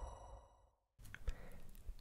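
The ringing tones at the tail of a short intro jingle fade out to silence within the first half-second. Then faint room tone follows, with a soft breath just before narration begins.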